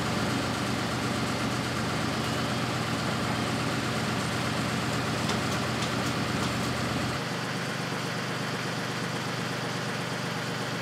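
Steady hum of an idling engine; its deepest part drops away about seven seconds in.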